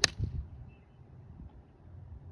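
Choked-down five iron striking a golf ball off grass: one sharp click right at the start, followed by a brief low thud.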